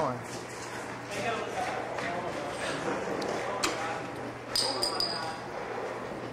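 Indistinct voices of several people talking in the background, with a sharp knock about three and a half seconds in and a brief high ring just before five seconds.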